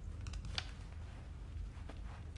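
Tense room ambience from a film soundtrack: a steady low rumble with a few faint, sharp clicks and rustles, the loudest click about half a second in.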